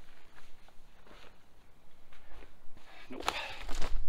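Soft footsteps of a hiker on a dirt and rock trail, with one louder, brief noisy sound about three seconds in.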